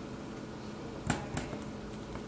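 A capacitor's wire leads being pressed into a mini solderless breadboard: a short click about a second in, then a fainter one, over quiet room tone.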